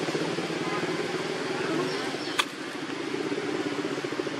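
Steady low hum of a running engine with a fine, even pulse, and a single sharp click about two and a half seconds in.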